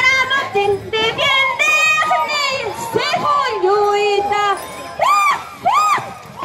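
High-pitched women's voices singing and shouting over a crowd, with two rising-and-falling whoops near the end.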